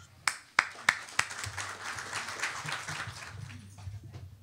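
Applause: four sharp hand claps close to the microphone, about three a second, then a round of clapping from the audience that thins out near the end.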